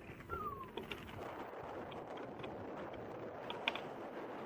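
Inmotion V12 electric unicycle rolling fast on asphalt: a steady rush of tyre and wind noise, with a short falling whine about half a second in and a few faint clicks near the end.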